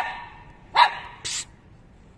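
English Cocker Spaniel puppy giving a single short bark about a second in, followed by a brief hissing noise.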